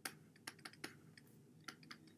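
Faint, irregular clicks and taps of a stylus on a pen tablet while a word is handwritten, about six sharp ticks in two seconds.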